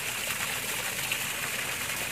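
Water pouring steadily from a borewell's outlet pipe and splashing onto the ground below.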